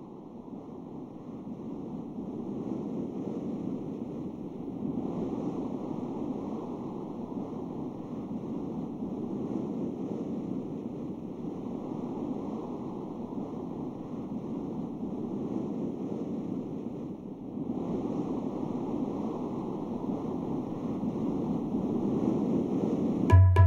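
Ocean surf: a steady rush of waves that fades in at the start and swells and ebbs slowly every few seconds.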